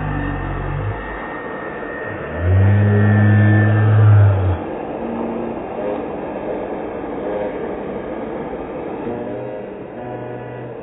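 Steady traffic noise of cars sitting in a jam, with one loud, low, steady tone lasting about two seconds from about two and a half seconds in.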